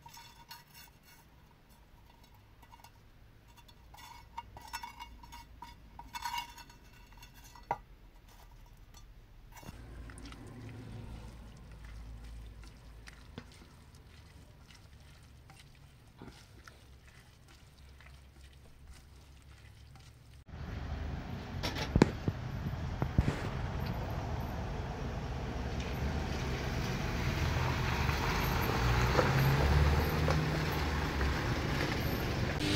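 A metal spatula and tongs clinking and scraping in a frying pan, then a spatula stirring a steaming pot. About twenty seconds in, a sudden, louder, steady rushing noise takes over, with a few sharp knocks.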